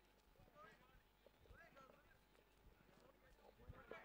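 Near silence: faint, distant voices with a few light knocks.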